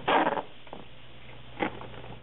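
Duct tape pulled off the roll with a ripping rasp, a longer pull at the start and a short one about a second and a half in, over a steady low hum.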